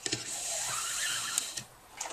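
Nylon paracord pulled through a braid, rubbing against itself in a steady hiss for about a second and a half, with a small click near the end.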